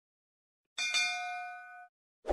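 A bell-chime ding sound effect: a bright ring struck twice in quick succession about three-quarters of a second in, ringing on for about a second before it cuts off abruptly.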